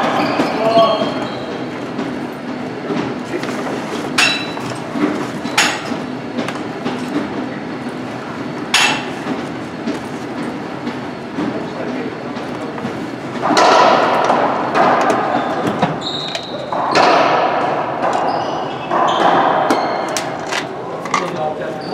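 Racquetball rally: the hollow rubber ball cracking off racquets and the court walls in a few sharp hits, echoing in the enclosed court.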